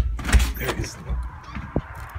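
Thumps and rustling as a phone is carried at a hurry out of a house, the loudest thump right at the start and a sharp click near the end. From about halfway through there is a steady hiss of open air.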